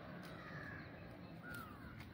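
A bird calling twice, faint, each call a short falling note, the second near the end.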